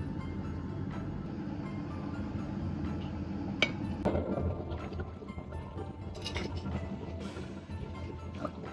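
Quiet background music, with a metal ladle clinking sharply against a steel wok a couple of times about midway and broth being poured into the wok.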